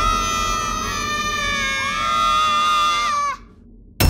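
Eerie horror-score sound effect: several high, sustained wailing tones that overlap, bend and glide, then stop abruptly a little after three seconds in.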